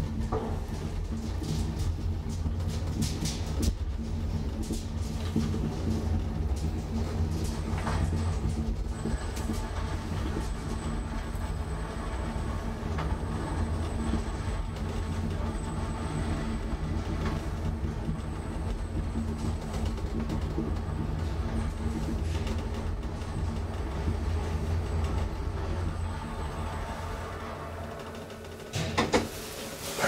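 1960s KONE high-rise traction elevator, modernized by WPM, running in its shaft: a steady low rumble and hum heard from inside the car. The rumble eases off near the end as the car slows and levels at the floor, followed by a few sharp knocks and clicks.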